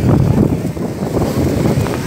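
Wind buffeting a phone's microphone: a loud, uneven low rumble.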